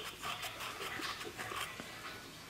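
Faint, irregular rubbing and handling noise of cloth being wiped over a camera lens close to its microphone.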